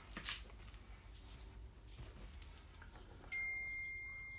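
Faint clicks and handling of the air rifle's parts as the butt section is taken off, then about three seconds in a steady high-pitched tone starts abruptly and holds.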